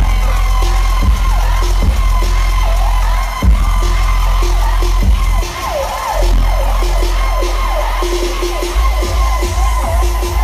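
Live electronic dance music played loud over a concert PA, heard from the crowd. A heavy sub-bass runs under repeated siren-like falling synth glides, and the bass drops out briefly a little past halfway.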